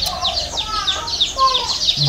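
Small birds chirping: a rapid, steady series of short, high, falling chirps, about six a second, with a couple of lower calls in between.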